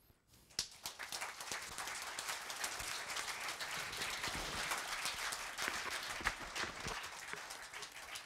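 Audience applauding: a dense, steady patter of many hands clapping that starts about half a second in and thins out near the end.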